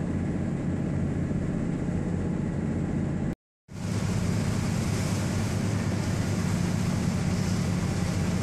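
A ferry's engine running with a steady low drone, with wind and rushing water on the microphone. The sound cuts out briefly about three and a half seconds in, then carries on the same.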